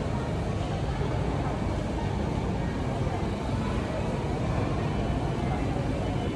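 Steady low rumble of background noise with indistinct voices mixed in; no separate mechanical sounds stand out.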